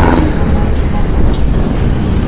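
Steady wind noise on an action camera's microphone while riding a KYMCO Super 8 125cc scooter in traffic, with the scooter's single-cylinder four-stroke engine running underneath.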